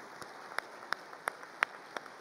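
Audience applauding, with single hand claps close to the microphone standing out about three times a second.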